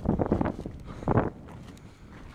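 Wind gusting across the camera microphone: a rumbling buffet, loudest in the first half second and again briefly about a second in, then easing off.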